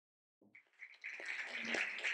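Audience applauding, starting about a second in after a brief silence and building as more hands join.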